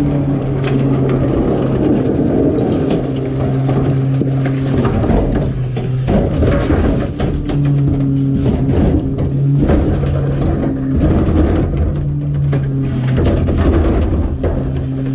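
Rear-loader garbage truck's engine and hydraulics running at a raised, steady hum that drops out and returns several times as the packer blade finishes its sweep and the cart tipper lifts and dumps a wheeled trash cart. Clanks and rattles of the plastic cart and the falling bags come through on top.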